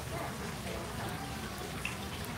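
Steady background ambience inside a large store: a low hiss and hum with faint distant voices.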